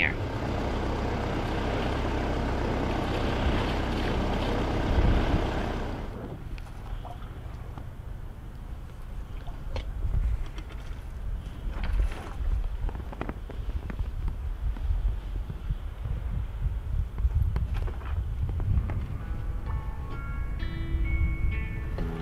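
Sailboat under way: a steady rush of wind and water with a low hum beneath for about six seconds, then it changes suddenly to gusty low rumbling of wind on the microphone with a few knocks. Background music comes in near the end.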